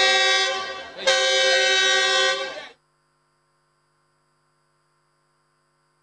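Passenger train's horn sounding two long blasts, the first already going as the sound opens and fading, the second starting about a second in and cutting off abruptly; then the rest is silent.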